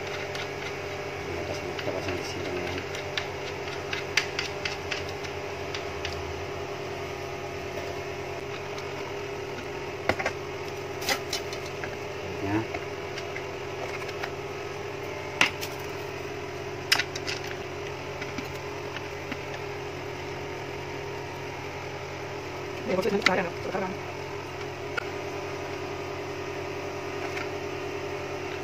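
Scattered small clicks and taps of plastic stand-fan base parts and bolts being handled and screwed together by hand, over a steady hum.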